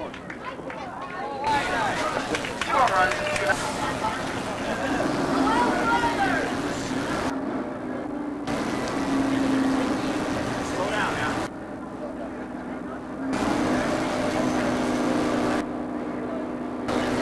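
Indistinct voices of people nearby talking and calling out, with a steady low hum underneath through the second half.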